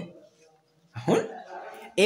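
A dog barks once, a short call falling in pitch, about a second in.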